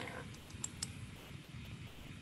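Three light computer clicks in the first second, as a presentation slide is advanced, over low steady room noise.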